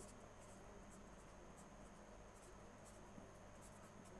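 Near silence: faint, irregular scratching of a pen drawing on paper, over a low steady electrical hum.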